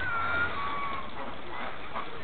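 Thin, high whistled calls from a flock of feeding domestic ducks and a goose: two drawn-out notes in the first second, the second a little lower than the first.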